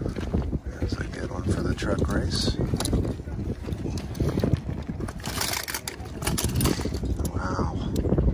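Indistinct background voices over a low wind rumble on the microphone, with small diecast toy cars clicking and rattling against each other as they are picked out of a plastic bin, most clearly about five seconds in.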